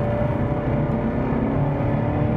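Jaguar F-Type R's supercharged V8 running hard under throttle, heard from inside the cabin as a steady engine note over a low road rumble.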